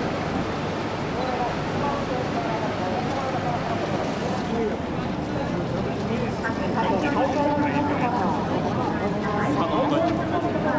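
Mini excavators' diesel engines running with a steady hum as the buckets stir the pot, under indistinct speech that grows a little louder in the second half.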